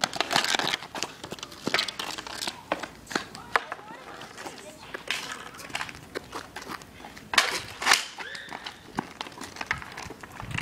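Street hockey play: sharp, irregular clacks and knocks of sticks and ball on pavement, with voices calling out.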